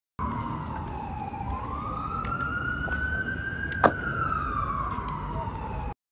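An emergency-vehicle siren wailing in a slow glide, falling, then rising, then falling again. A low rumble runs underneath, and there is one sharp click about four seconds in.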